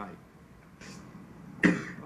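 A single short, sharp cough from a man close to the microphone, about one and a half seconds in, after a brief intake of breath.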